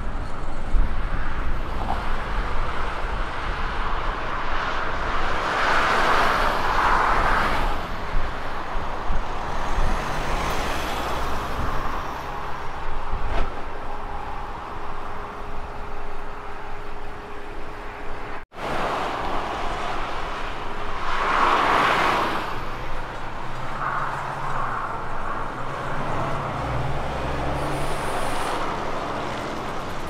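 Heavy truck engine running as a prime mover pulls two tipper trailers slowly through an intersection, over steady road traffic. Two louder passes swell and fade, about six seconds in and again about twenty-one seconds in, with a momentary break in the sound near the middle.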